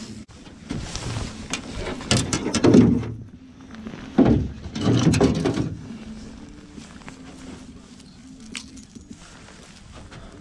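Fishing tackle being handled in an aluminium jon boat: two bursts of clattering and rustling, about two and five seconds in, then quieter handling.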